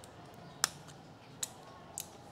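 Three short sharp clicks, the first the loudest, from plastic protective film and covers being peeled off a new motorcycle's parts and handled.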